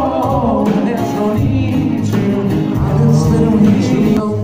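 Live band performing: a man singing over acoustic guitar and drums.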